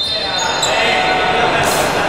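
A basketball being dribbled on a wooden sports-hall floor, with voices in the echoing hall.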